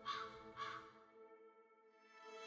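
Two short, harsh cawing calls about half a second apart over a faint, sustained ambient music pad; the music fades almost to silence in the second half.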